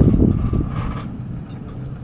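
Pickup truck towing a loaded floatplane trailer: a low rumble of engine and rolling tyres that fades about halfway through.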